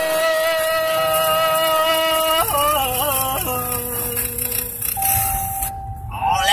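A man singing R&B-style inside a car: a long held high note, a quick run with wavering pitch about two and a half seconds in, then a lower held note.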